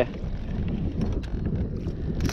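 Wind buffeting the microphone, a low steady rumble, with a few faint clicks about halfway through.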